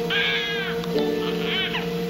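An infant crying in two short, high wails, one near the start and one about halfway, over a steady orchestral score.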